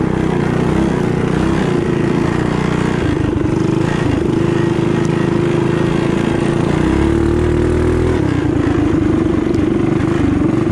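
Small mini bike engine running hard near wide-open throttle, heard up close from on the bike. Its high steady pitch sags briefly a couple of times and climbs back.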